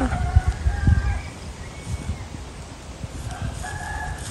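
A rooster crowing faintly, with wind rumbling on the microphone during the first second.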